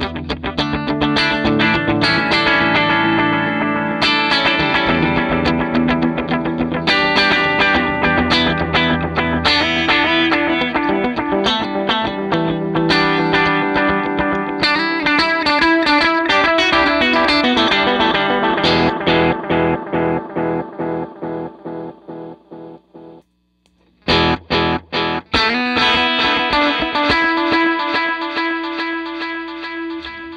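Electric guitar played through delay pedals, with picked phrases trailed by echoing repeats. At first it runs through an Electro-Harmonix Deluxe Memory Man analog delay. Past the middle the playing stops and the repeats decay away to near silence, then a new phrase starts through a Catalinbread Belle Epoch tape-echo pedal.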